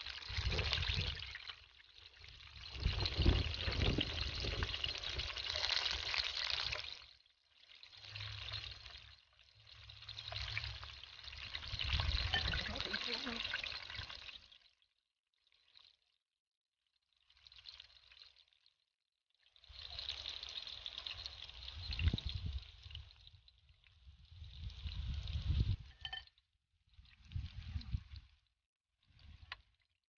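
Battered squash blossoms frying in hot oil in a skillet: a sizzle that comes in several stretches of a few seconds, broken by short silent gaps.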